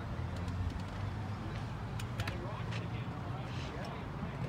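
Steady low hum of an idling car engine under faint background chatter.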